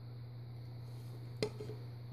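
Faint steady low hum, with one light click about a second and a half in.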